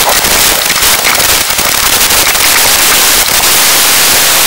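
Loud hiss and crackle of static on a wireless camera's radio link as its signal breaks up, settling into a steadier hiss near the end.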